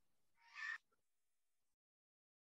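Near silence on an online call, broken by one short, faint, unidentified sound about half a second in. The line then goes completely dead.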